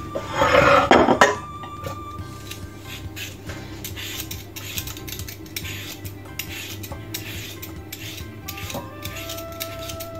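A metal Y-shaped peeler scraping the skin off a raw potato in short, repeated strokes. A loud clatter fills the first second, and faint background music runs underneath.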